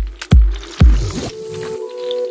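Deep-house music: a four-on-the-floor kick drum beats twice, about half a second apart, then drops out under a rising swell of noise. Held synth chords are left without the bass.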